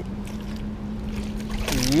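Steady rush of river water with a short splash near the end as a landing net scoops a hooked bass out of the water.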